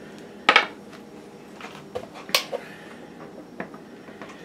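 A few light clicks and clinks of small hard objects being handled, with one sharper clack a little past halfway.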